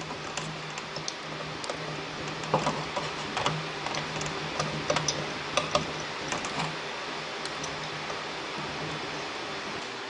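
Scattered light clicks and taps of computer parts being handled and fitted by hand, most of them in the middle of the stretch, over a steady low hum.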